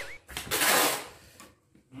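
Brown packing tape being pulled off its roll: a single pull of about half a second shortly after the start, fading away.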